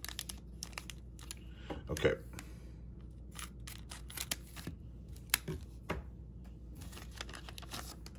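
Plastic trading-card pack wrapper crinkling in the hands and being cut open with scissors: a string of small, sharp crackles and snips.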